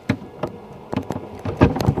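A series of short taps and knocks against the inside of a coffin lid, made by a hand and a pair of toenail clippers. They start sparse and bunch into a quick, louder cluster near the end.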